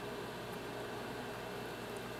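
Steady background hiss with a faint low hum: room tone with no distinct event.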